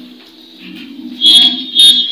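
Two short, shrill finger whistles, each a single high steady note, about half a second apart in the second half.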